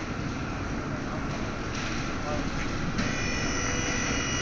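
Steady background noise, then about three seconds in the electric scissor lift's hydraulic power pack starts with a high, steady whine as the platform begins to rise.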